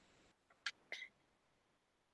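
Near silence: faint room tone on a video-call microphone, with two tiny short sounds about half a second and one second in.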